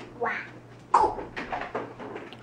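A young child's voice making loud wordless sounds: a short cry just after the start and a louder one about a second in, followed by quieter sounds.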